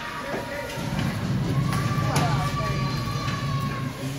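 Ice rink sound during a youth hockey game: a rumble of crowd voices and skating in the hall, a couple of sharp knocks, and a long steady high tone through the second half.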